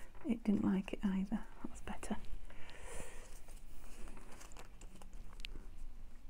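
Quiet muttered speech for the first two seconds, then paper cutouts being handled: a brief paper rustle about three seconds in and a few faint taps and clicks.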